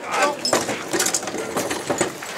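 Metal fittings and hanging bells of a Japanese portable shrine (mikoshi) clinking and jingling in irregular clicks as the bearers handle it.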